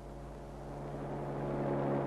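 Car engine running at a steady pitch while the car drives past, growing gradually louder.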